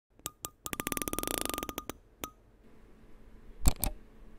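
Electronic intro sound effects: two clicks, then a rapid run of beeping ticks like a counter running up, stopping about two seconds in, followed by a loud, deep hit near the end.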